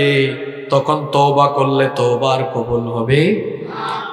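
A man's voice chanting a line in a melodic, sung sermon delivery, holding long notes with a short rising glide near the end.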